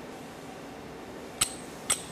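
Two short metallic clicks about half a second apart as a steel slide-hammer pin puller is locked over the head of an M6 bolt threaded into a lathe turret's locating pin.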